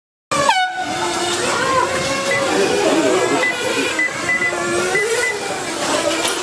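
Several radio-controlled racing motorcycles' motors whining, their pitches rising and falling as they speed up and slow down, starting abruptly just after the start with a falling whine. Short high-pitched beeps repeat every so often.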